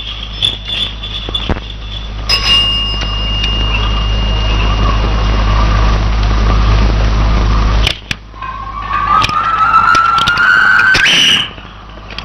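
Film soundtrack sound effect: a steady, high whistle-like tone held for several seconds over a low hum, breaking off, then a tone that glides upward for a couple of seconds.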